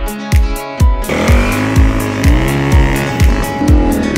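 A KTM enduro motorcycle's engine revving and pulling away, its pitch climbing and then holding, from about a second in until near the end, over background music with a steady kick-drum beat.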